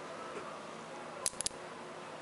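Three quick, sharp clicks about a second and a quarter in: small Nanodots magnet spheres snapping together as a sheet of balls is joined onto the shape. A faint steady room hiss runs under them.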